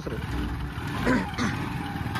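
Single-cylinder motorcycle engine running at low revs as the bike pulls its attached cargo-trailer bed forward at walking pace.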